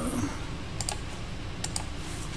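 Sharp clicks from computer input at a desk, coming in two quick pairs, about a second in and near the end, over a low steady hum.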